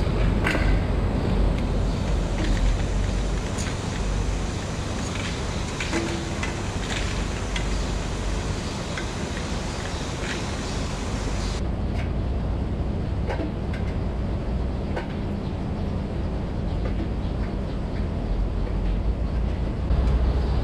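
Steady low machinery hum of a milking parlor, with scattered short clicks and knocks of milker units being fitted onto the wash cups.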